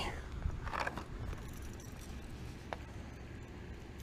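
Hands handling a crankbait and fishing line while tying it on: faint handling noise over a low, steady outdoor rumble, with one short click about two-thirds of the way through.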